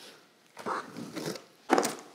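Handling noise from a corrugated cardboard shipping box as it is opened: soft rubbing and scuffing, then a short, louder rasp near the end.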